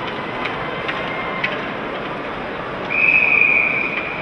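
Steady arena crowd noise with a few sharp clicks of sticks and puck on the ice, then about three seconds in a referee's whistle blows one shrill, steady blast for about a second, signalling a stoppage in play as players pile up along the boards.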